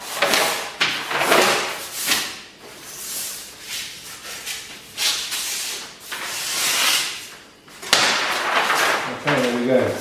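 Heavy brown kraft paper being slit with a long knife and then handled: a series of loud papery swishes and rustles as the blade runs through the sheet and the cut strips are slid and lifted off the table.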